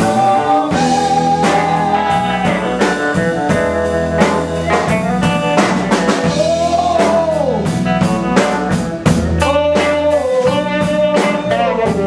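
Live band playing: a woman singing long, wavering held notes over electric guitar and a drum kit keeping a steady beat.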